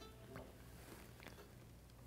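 Near silence: room tone with a low steady hum, and a couple of faint soft rubs of a cloth wiped over the viola's top.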